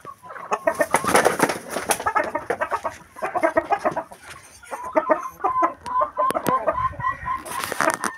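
Pama chickens clucking in a pen, a busy run of short calls. In the second half one bird repeats an even, clucking note about four times a second.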